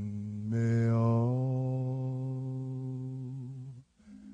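A deep male voice sings a long, steady low note. It moves to the note about half a second in and breaks off just before the end.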